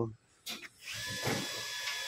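A brief knock about half a second in, then a power tool running with a steady, even whine over a hiss from about a second in.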